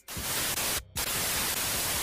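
Static-noise sound effect for a video glitch transition: a steady hiss of static that cuts out briefly about a second in.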